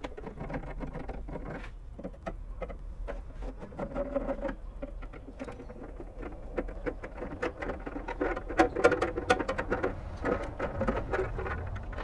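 A screwdriver backing out the cover screws of a plastic electrical enclosure: a run of small, irregular clicks and scratchy scrapes.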